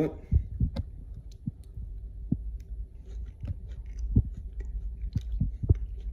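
A man chewing a spoonful of vegetarian chili, with soft low thumps and a few light clicks scattered through it, over a low steady hum.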